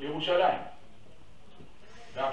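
A person's voice sounds one short phrase with a wavering pitch in the first half second or so, then a steady faint hum of background noise.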